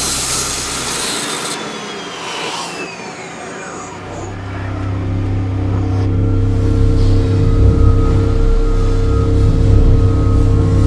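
Multi-axis CNC machine milling a clarinet mouthpiece from solid billet, with a hissing spray of coolant, winding down with a falling whine over the next second or two. About four seconds in, steady droning music with held tones comes in and grows louder.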